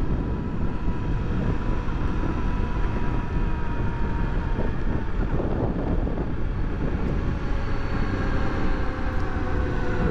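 Honda XRE300 single-cylinder engine running under way, heard from on board over wind and road noise. Its note falls slowly as the motorcycle slows.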